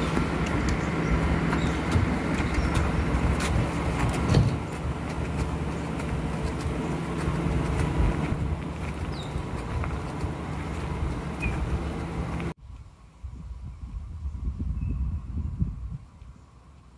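A steady low machine-like hum over constant outdoor background noise, with a few faint clicks. It cuts off suddenly near the end, leaving only a much quieter low rumble.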